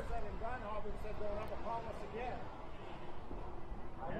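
A faint, distant man's voice talking in short phrases over a low, steady background rumble.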